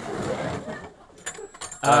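Light metal tableware clinking: a run of quick, high-pitched clinks and jingles starting about a second in, after a brief murmur.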